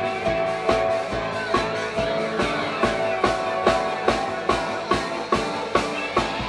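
A live band playing: a drum kit keeps a steady beat, with a strong hit a little under once a second, under held electric guitar and bass notes.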